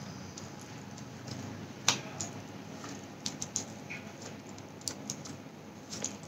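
Tarot cards handled in the hands, giving scattered light clicks and taps of card against card, the sharpest about two seconds in, over quiet room hiss.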